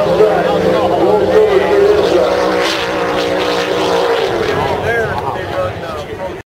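Racing drag boat engines making a run, a steady loud drone that fades about four seconds in.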